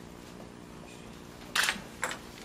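A camera shutter clicking once, loudly and briefly, about one and a half seconds in, over quiet room tone.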